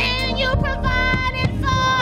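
Gospel praise team singing with a woman's high lead voice in front. Her sustained notes break into short, quick phrases over a moving bass line and a few sharp beats.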